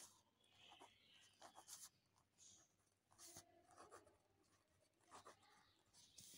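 Faint scratching of a ballpoint pen writing on a squared paper notebook page, in short strokes with brief gaps between them.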